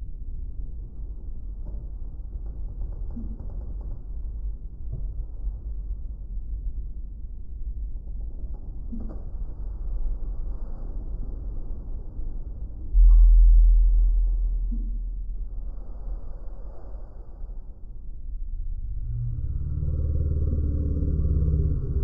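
Low road and tyre rumble heard inside the cabin of a Tesla electric car driving on a street. About halfway through, the rumble abruptly grows louder and then fades over a couple of seconds. Near the end a steadier hum builds up over it.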